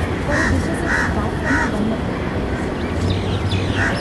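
Crows cawing: three short caws about half a second apart, then one more near the end, over steady outdoor background noise.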